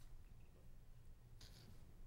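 Near silence with a low steady room hum, and a brief soft rustle of paper sheets being handled about one and a half seconds in.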